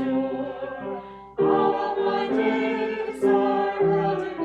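Small mixed choir singing a slow worship song in held notes, with piano accompaniment. The voices drop away briefly about a second in, then come back in together on a new phrase.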